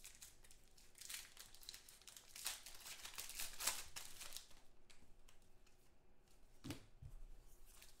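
A foil trading-card pack wrapper being torn open by hand and crinkled as it is peeled back, in irregular faint rustles and crackles.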